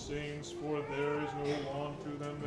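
Choir singing Orthodox liturgical chant, with held notes in several parts that move from pitch to pitch together.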